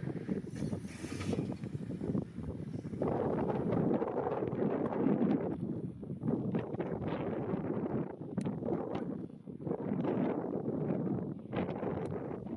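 Wind buffeting the microphone: an uneven, gusting rumble that rises and falls throughout.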